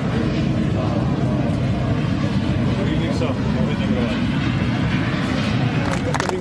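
Steady low rumble of aircraft engines running on an airport apron, with people talking over it.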